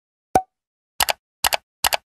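End-screen animation sound effects: a single short pop, then three quick double clicks like a computer mouse button, about half a second apart.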